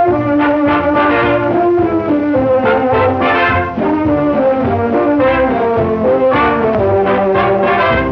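Brass-led orchestral music with trombone and trumpet prominent, playing a lively melody: the opening title theme of a 1937 cartoon score.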